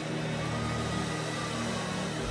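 Soft background music holding a steady, sustained chord under the prayer, with no melody or beat.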